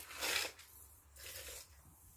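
Brief handling noise: a short rustling scrape near the start, then a fainter rustle about a second and a half in.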